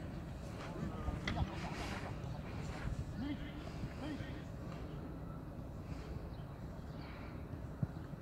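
Distant, indistinct voices over a steady low background noise, with a few faint knocks.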